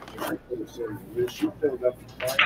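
Indistinct murmur of voices in a busy pool hall, with two brief rustling scrapes, one just after the start and one about a second and a half in.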